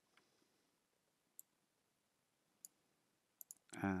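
A few isolated computer mouse clicks, about four, the last two in quick succession.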